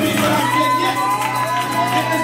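Live church worship music: the band holds sustained chords with a long held melodic note above them, while the congregation cheers and claps along.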